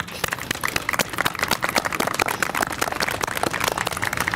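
Audience applauding: a steady run of many separate hand claps.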